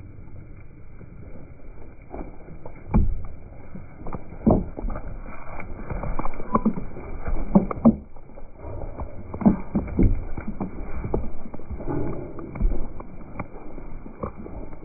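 Hooves of a flock of Zwartbles sheep thudding on soft, muddy ground as they run past close to the microphone: an irregular patter of thuds with louder knocks as individual sheep pass nearest.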